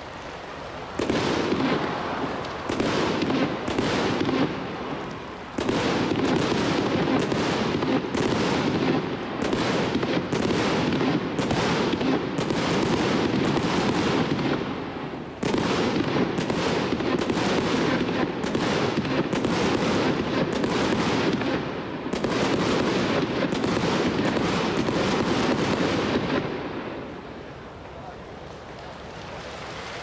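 Daytime fireworks set off along the outfield: a long salvo of rapid bangs, about two a second, with a few short pauses, dying away near the end.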